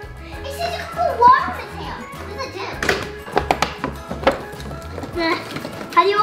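Children's voices and play sounds over background music, with a quick run of sharp clicks and taps about three to four seconds in.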